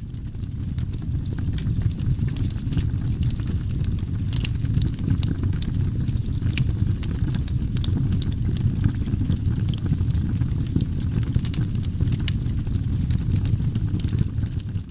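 A steady low rumble with many small crackles and pops scattered over it.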